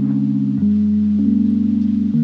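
Background music: soft, sustained low synth chords with a slight pulsing wobble, changing chord twice.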